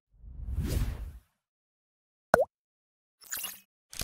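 Outro logo sound effects: a whoosh swelling and fading in the first second, then a short sharp swish with a quick pitch sweep, then two brief shimmering hits near the end.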